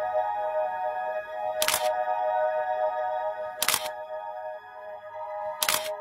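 Background music: a sustained chord held steady, with a short, sharp hit about every two seconds, three times.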